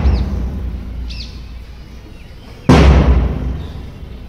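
Large drum struck with heavy booming beats about three seconds apart, each ringing out and dying away slowly, keeping time for a PT drill. Birds chirp faintly.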